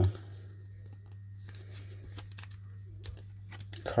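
Faint rustling and light clicks of a soft plastic card sleeve and a rigid plastic top loader being handled as a trading card is slipped into them, over a steady low hum.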